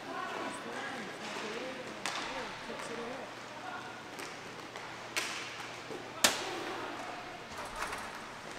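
Inline hockey play in an echoing rink: sharp knocks of sticks striking the puck and the puck hitting the boards, four of them, the loudest a little past six seconds in, under indistinct shouts from the players.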